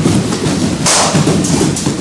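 Many bare feet thudding irregularly on judo tatami mats as a group runs a warm-up drill, with a brief sharper swish about a second in.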